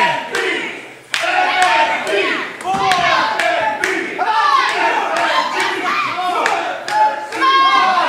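Small wrestling crowd shouting and cheering in a hall, many voices overlapping, with scattered claps and thuds; a sharp clap or thud about a second in.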